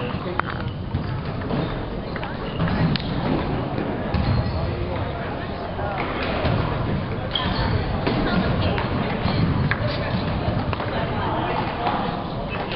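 Table tennis hall: many sharp clicks of celluloid ping-pong balls striking tables and paddles at the surrounding tables, over a steady murmur of background chatter.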